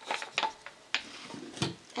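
Handling noise from craft work: a few light clicks and taps of tools and plastic being moved on a work surface, with one louder knock about one and a half seconds in.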